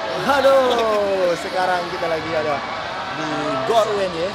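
Men's voices: a long, falling call, then short bits of untranscribed talk.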